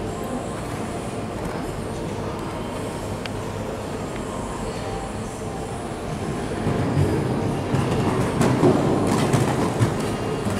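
Steady rumbling background noise, then from about seven seconds in the irregular hoofbeats of a horse cantering on an arena's sand footing grow louder as it comes close and jumps a fence.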